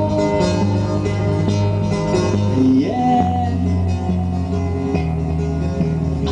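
Acoustic guitar playing the opening of a song: sustained chords over steady low bass notes, with a note that slides upward about two and a half seconds in.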